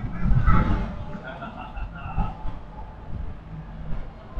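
A voice trails off about half a second in. After that comes a steady low outdoor rumble, with faint voices in the background.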